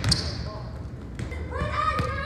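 A sharp smack of a volleyball just after the start, ringing on in the gym. Near the end, a high-pitched voice calls out, held for under a second.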